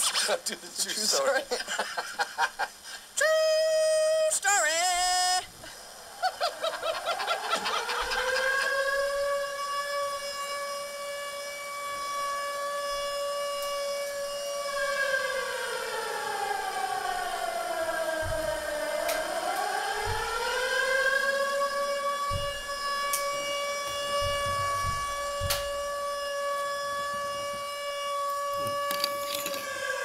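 A long siren-like wail played through a small radio's speaker. It rises, holds steady, sinks slowly near the middle, climbs back up and holds again. It follows a few seconds of chopped voice snippets and a short wavering note.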